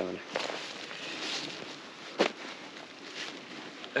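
Rustling and shuffling on dry leaf litter as gear is moved and a nylon backpack is handled, with one sharp click a little after two seconds in.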